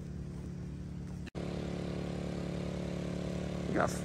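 Small portable generator engine running steadily, a constant low hum, as used to power the mercury-vapour moth lights. The sound cuts out for an instant about a second in, at an edit.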